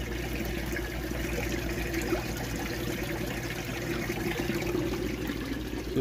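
Steady trickle of running water, with a constant low hum underneath.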